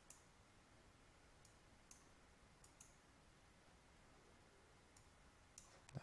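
Faint computer mouse clicks, several single clicks spaced irregularly, over near silence.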